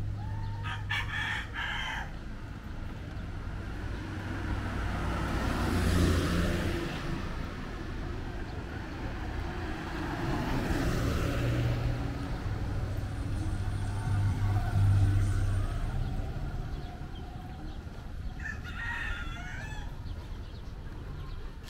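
Road traffic passing on a city boulevard: engines and tyres swell and fade several times as vehicles go by, one of them a passenger jeepney. A rooster crows briefly near the start and again near the end.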